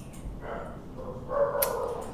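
A faint, high, steady whining call, briefly about half a second in and again from past the middle, with one sharp click near the end.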